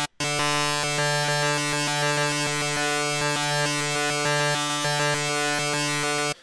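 Reason's Subtractor software synthesizer holding one steady buzzy note, which starts a moment in. Its oscillator phase offset is stepped by a Matrix pattern sequencer's random curve, so the tone shifts in small jumps like sample-and-hold modulation.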